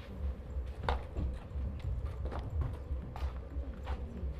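Footsteps on a raised studio stage floor: a handful of irregular hard knocks as people walk across it, over a steady low hum.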